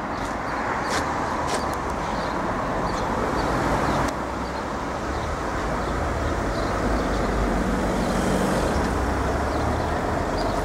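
Steady road traffic noise: a continuous low rumble and hiss of cars on the street.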